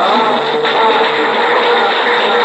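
Old, low-fidelity recording of a private music session: the singing and oud give way to a sudden loud, noisy wash, with listeners' voices calling out. A faint held note of the music carries on underneath.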